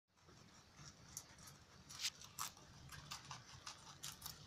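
Rabbits chewing fresh leafy green stems: faint, irregular crisp crunching clicks, with the loudest two a little after two seconds in.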